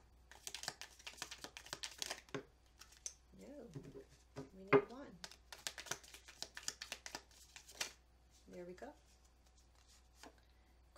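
A thick deck of round tea-leaf cards being shuffled by hand: quick runs of crisp, rapid card clicks in two spells, with one sharp click about halfway through that is the loudest sound.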